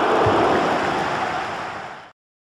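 Logo-intro sound effect: a steady rushing noise that fades out near the end.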